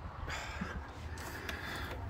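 A short, faint breath about a quarter of a second in, over a quiet, steady low background rumble.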